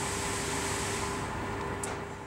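Steady background hum and hiss with a faint constant tone, and a small tick near the end; no distinct sound event stands out.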